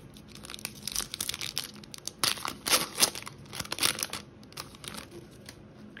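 Foil wrapper of a Topps Big League baseball card pack being torn open and crinkled by hand: a run of crackly rips and rustles, loudest about halfway through, then fading near the end.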